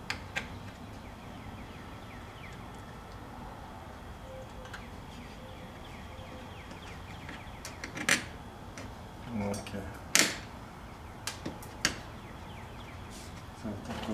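Scattered sharp clicks and snaps of metal pliers working the wire connectors off the terminals of an LED light's rocker switch, the loudest about ten seconds in, over a low steady background noise.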